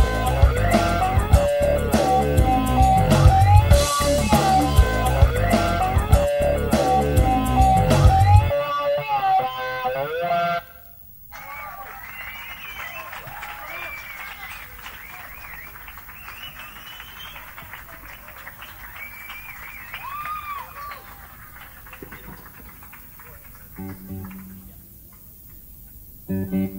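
A live rock band with electric guitars, bass, drums and keyboards, taken straight from the mixing desk, plays the final bars of a song. The full band cuts off about eight seconds in, and the guitar rings out for a couple of seconds. After a short gap there is faint crowd applause with whistles, then a few quiet guitar notes near the end.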